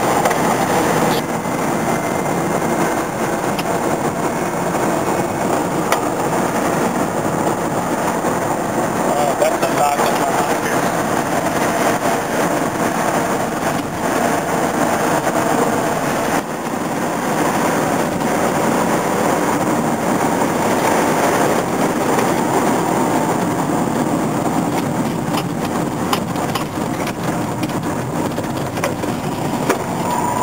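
Cabin noise of a 1971 VW Beetle converted to an 84-volt electric drive on the move. Tyre and wind noise run steadily, with a faint whine from the electric motor and gearbox and no engine sound.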